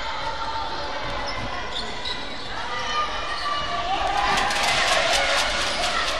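A basketball bouncing on a hardwood gym floor during play, with voices calling out across an echoing hall. The knocks come thick and fast in the second half.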